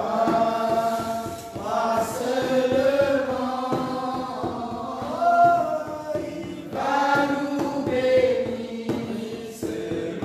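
A group of voices singing a hymn together, in sung phrases a few seconds long.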